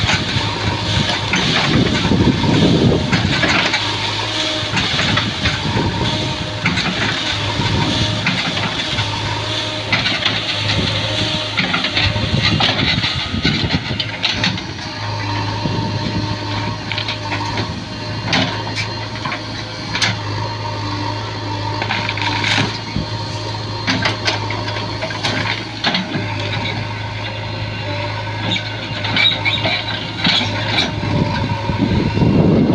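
JCB backhoe loader's diesel engine running steadily under load as its backhoe arm pushes against a palm tree trunk, with scattered sharp knocks and cracks throughout.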